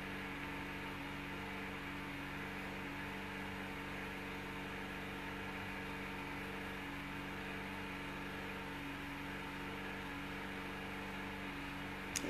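A steady low hum of several constant tones over a faint even hiss, with no other events: quiet room tone.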